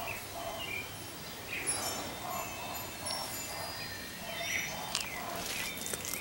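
Birds calling: a lower note repeated about twice a second, with short high whistles and curved chirps over it. A single click near the end.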